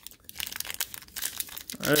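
Foil trading-card pack wrapper crinkling and crackling as it is handled and opened, starting about a third of a second in.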